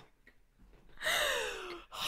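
A woman's voiced sigh, gliding down in pitch for just under a second, starting about halfway in after a short silence.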